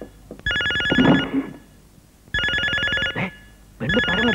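A telephone bell ringing in repeated bursts just under a second long: three rings, the last starting near the end.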